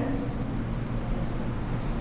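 Steady low background rumble with a faint low hum underneath; no distinct events.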